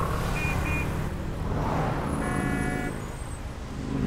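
Busy street traffic of motorcycles and cars running past, a steady low rumble. Two short horn beeps sound about half a second in, and a longer horn blast about two seconds in.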